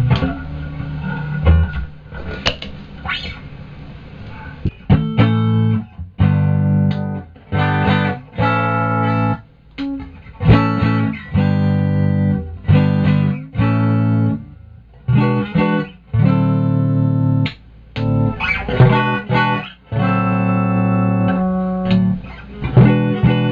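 Kingston Swinger electric guitar played through an amplifier: a few seconds of loose ringing notes, then strummed chords in short, rhythmic stabs with brief gaps between them.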